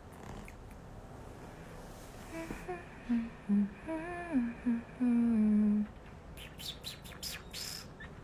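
A woman humming a short tune with her mouth closed: a handful of brief notes that slide between pitches, ending on one held for most of a second. A few short, soft hissing sounds follow near the end.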